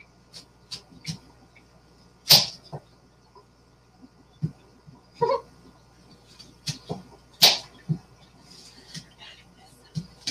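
Kitchen knife slicing an apple and knocking on a cutting board: a dozen or so short, sharp, irregular knocks, the loudest about two and a half and seven and a half seconds in.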